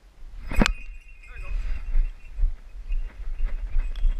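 A sharp knock about half a second in, a brief cry just after one second, then repeated low thumps and rustling on the body-worn camera as its wearer moves quickly.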